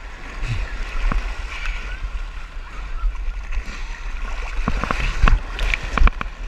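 Shallow surf washing and splashing over a camera held at the waterline, with a steady low rumble of water against the microphone. Sharper splashes come about five seconds in.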